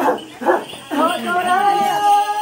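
Excited human voices calling out over one another, then one long, high, slightly wavering call held from about a second in.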